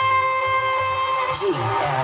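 Loud music played through a large outdoor DJ speaker stack. A held melodic note slides downward about 1.4 seconds in, over a pulsing bass line.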